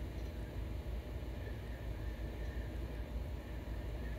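Steady low rumble and hiss of room noise with no distinct events, such as the ventilation of a large indoor hall gives.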